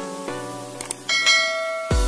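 Outro jingle: a run of pitched electronic notes, then a bell-like chime that rings on from about a second in, the notification ding of a subscribe-button animation. Just before the end a bass-heavy electronic beat comes in.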